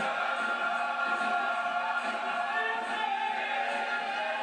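Large men's gospel choir singing in harmony, holding long sustained notes.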